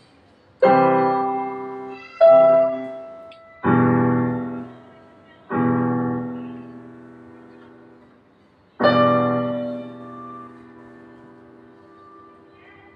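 Electronic arranger keyboard played with a piano sound: five slow chords, each struck sharply and left to ring and fade, the last coming after a longer pause.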